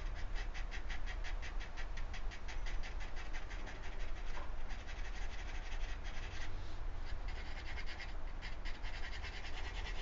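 Drawing pencil scratching across sketchbook paper in quick, even hatching strokes, several a second, pausing briefly about halfway before starting again.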